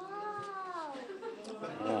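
A person's long drawn-out vocal exclamation, an 'ooooh' that rises then falls in pitch over about a second, followed near the end by excited 'wow' calls.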